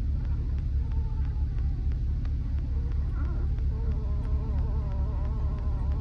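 Steady low rumble of a 2000 GMC Sierra pickup rolling slowly along a sandy dirt road, heard from inside the cab. A faint wavering buzz joins in about halfway through.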